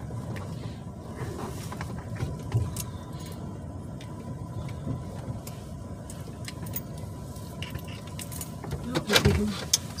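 Steady road and engine noise inside a moving vehicle's cabin, with light clicks and rattles. A brief louder sound comes about nine seconds in.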